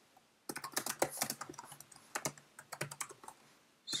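Typing on a computer keyboard: a quick, uneven run of key clicks that starts about half a second in and stops shortly before the end.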